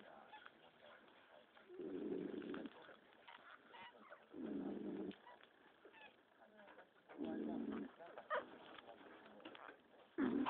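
Faint small squeaks and grunts from a newborn puppy. A soft rushing sound comes three times, about two and a half seconds apart.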